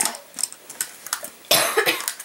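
Light clicks and taps of makeup containers being handled and knocked together, then a short, loud cough about one and a half seconds in.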